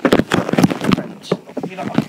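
Loud handling noise close to the camera's microphone: a quick cluster of rubs, scrapes and knocks in the first second, then a few scattered knocks, as the camera is moved and toy figures are handled over carpet.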